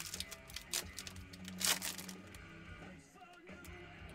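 Foil trading-card pack wrapper crinkling and tearing open, with crisp crackles through the first two seconds that then thin out, over faint background music.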